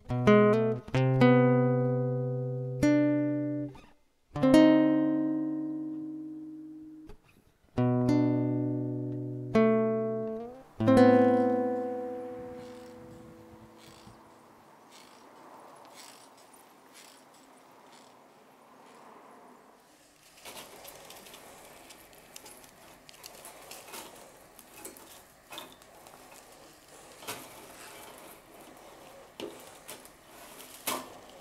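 Background music: a plucked guitar playing a few slow notes and chords, each left to ring out and die away. After about twelve seconds it gives way to low background noise, with faint scattered clicks and knocks from about twenty seconds in.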